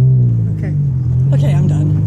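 Car engine running at low speed, heard inside the cabin as a steady low drone.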